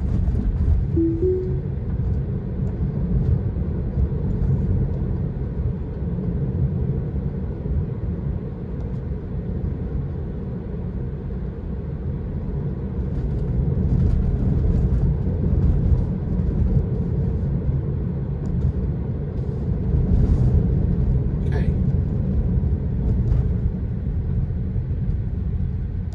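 Road and tyre noise inside a moving Tesla's cabin: a steady low rumble that swells and eases with speed. About a second in, a short two-note chime sounds as Full Self-Driving engages.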